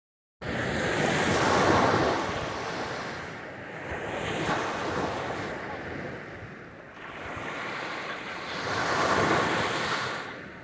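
Small sea waves breaking and washing up a sandy beach, the surf swelling loudest about two seconds in and again near the end, with wind buffeting the microphone.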